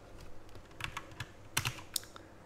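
Computer keyboard keys tapped a handful of times, short separate clicks mostly in the second half, as a value in a line of code is edited.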